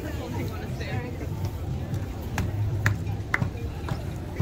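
Voices and chatter of an outdoor crowd, with three sharp clicks about half a second apart in the second half.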